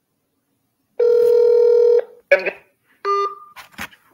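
Telephone ringback tone heard over a phone's speaker: one steady ring lasting about a second. It is followed by short clipped sounds on the line as the call is answered.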